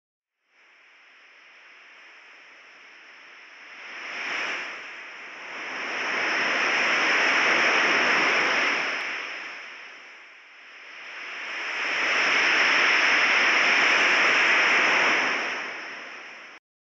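Refrigerant leak hiss heard through an AccuTrak VPE ultrasonic leak detector, which turns the leak's inaudible ultrasound into an audible hiss. It swells and fades, loudest in the middle and again near the end, over a thin steady high tone. The hiss is the sign of a leak in the condenser's refrigerant line.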